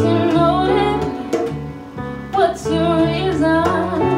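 Small live band playing a song: a young woman singing lead over piano, electric guitar, electric bass and a hand drum.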